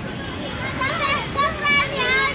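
Young children's high-pitched voices calling out and squealing as they play, starting about a second in, over a steady low background noise.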